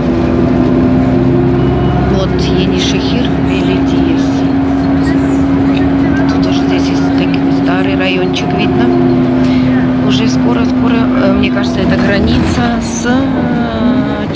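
Inside a moving city bus: the engine runs with a steady, unbroken drone. Background voices can be heard over it.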